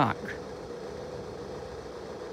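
Level crossing audible warning sounding a steady flat tone, one unchanging pitch.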